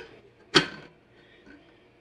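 One sharp clack about half a second in, with a short ring, as the small side pot of a triple slow cooker is fitted onto its swivel arm; faint handling knocks follow.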